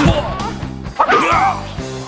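Bruce Lee's shrill martial-arts battle cries over background music. A short yell comes with a sharp hit at the start, and a longer wavering cry follows about a second in.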